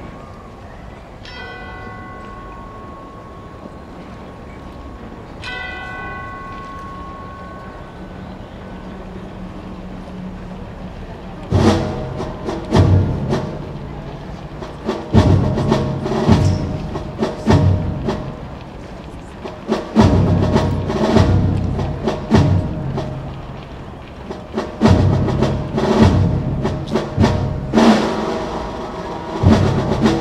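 A bell is struck twice, about four seconds apart, and rings out. From about eleven seconds in, slow, heavy drum strokes begin, timpani-like deep beats in an uneven pattern that go on to the end.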